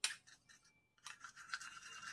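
A spoon stirring and scraping a thick paste of ground coffee and yogurt in a small plastic bowl, faint, after a single click at the start; the scraping sets in about a second in.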